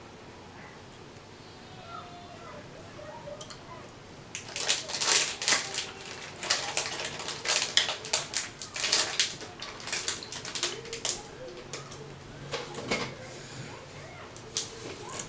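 Mouth sounds of someone eating a chili-covered gummy candy: chewing and wet smacking, quiet at first, then a quick run of short sharp clicks and hisses from about four seconds in.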